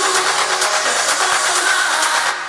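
Electronic dance music playing with the bass cut out, leaving a dense, buzzing layer of mids and highs, as in a DJ transition between tracks.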